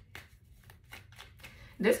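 Tarot cards being shuffled by hand: a faint run of quick, papery flicks, several a second. A woman starts speaking near the end.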